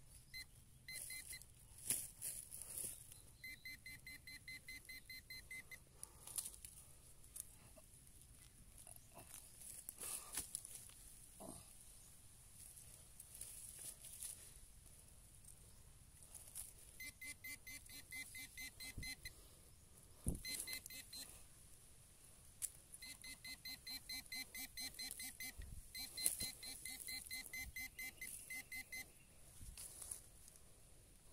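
Metal detector pinpointer giving rapid pulsing beeps in runs of a few seconds, signalling metal in the dug soil, with a few knocks from digging and handling soil between them.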